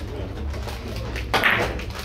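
A Russian pyramid billiards shot: the cue strikes the cue ball and the large balls clack together, with the loudest clatter about one and a half seconds in. A low steady hum runs underneath.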